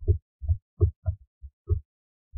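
A string of about seven soft, low thumps, unevenly spaced a quarter to half a second apart: a stylus tapping and stroking on a writing tablet, picked up by the microphone.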